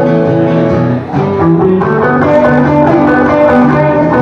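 Steel-string acoustic guitar and hollow-body electric guitar playing together in an instrumental passage between sung verses, with a brief dip in loudness about a second in.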